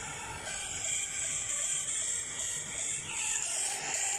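Wood campfire burning with a steady hiss, music playing faintly in the background.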